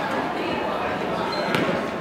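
A basketball bounced once on a hardwood gym floor, a sharp knock about a second and a half in, over a murmur of voices in the gym.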